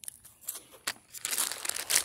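Clear plastic bag of cereal rings crinkling as a gloved hand digs into it: a few scattered clicks at first, then steady crackling from a little past halfway.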